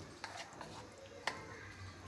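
Spoon stirring thick cake batter in a ceramic bowl, with a few faint clicks of the spoon against the bowl.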